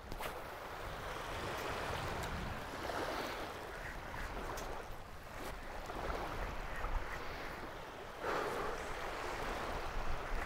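Small waves lapping and washing onto a sandy bay shore, with wind on the microphone; the wash swells louder a little after eight seconds in.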